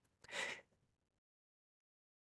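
A single short, soft intake of breath by the presenter near the start, followed by dead silence.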